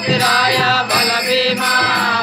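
A group singing a devotional bhajan together, with hand clapping and jingling hand percussion keeping the beat.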